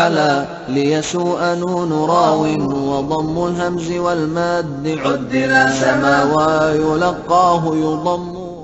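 A man's voice chanting in long, held notes that slide and waver in pitch, continuous with only brief breaths, typical of a vocal nasheed-style chant used as a bridge.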